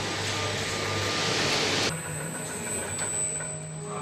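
Machine noise of an automated warehouse's overhead bicycle conveyor: a steady low hum under a loud hiss that stops abruptly about two seconds in, leaving the quieter hum and a thin high whine.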